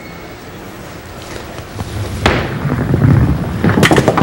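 A five-pin bowling ball rolling down a wooden lane, its rumble building over the second half. There is a sharp crack a little over two seconds in, then a clatter of sharp knocks near the end as the ball strikes the pins.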